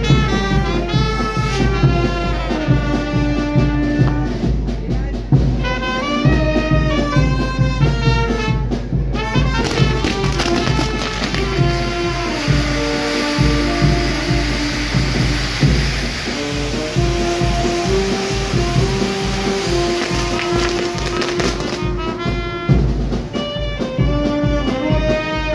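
Brass band music with a steady drum beat. From about ten seconds in to about twenty-two seconds, a loud spraying hiss from the fireworks on the burning castle, the spinning wheel throwing sparks, runs under the music.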